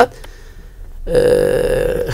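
A man's voice: after a short pause, a drawn-out hesitation sound held on one steady pitch for about a second.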